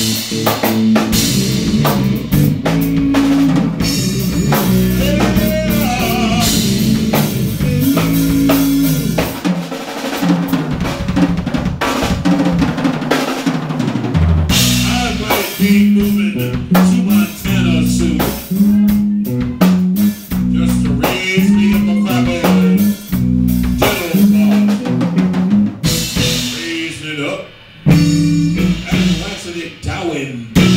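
Live rock band playing an instrumental passage: a drum kit with snare and bass drum, a walking electric bass line and electric guitars.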